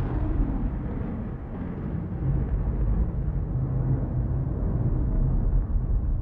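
Deep, steady low rumbling drone of a film soundtrack, its higher tones slowly fading away.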